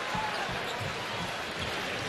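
A basketball being dribbled on a hardwood court, bouncing about two or three times a second, over the steady murmur of an arena crowd.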